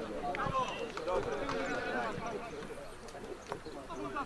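Voices calling and talking across an outdoor football pitch during play, with a few short sharp knocks about half a second in and near the end.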